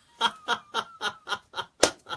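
A man laughing hard in a rapid run of short bursts, with one sharp clap of his hands near the end.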